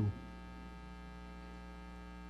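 Steady electrical mains hum, low and unchanging, with a ladder of evenly spaced higher overtones above it.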